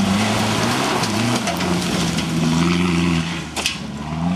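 A Toyota 4x4 rally car's engine running hard as it passes close by on a dirt track, with loose dirt and gravel rattling under the tyres. The engine note dips briefly about a second in and picks up again, then falls away near the end, with one sharp click.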